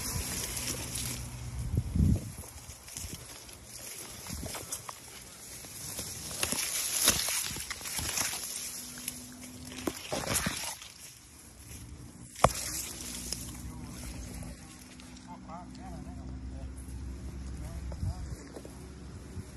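Sugarcane leaves rustling and scraping against the phone and body as someone pushes through a cane patch, in irregular bursts, with a sharp knock about twelve seconds in.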